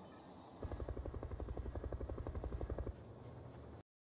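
Helicopter rotor chopping in a cartoon soundtrack: a rapid, even beat of about eleven pulses a second that lasts about two seconds and then stops. A fainter hum follows, and the audio drops out briefly near the end.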